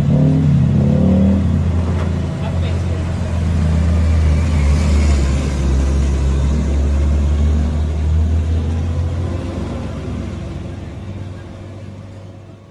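Large diesel tanker truck's engine under load climbing a steep hairpin bend, a deep steady rumble that fades over the last few seconds as the truck pulls away.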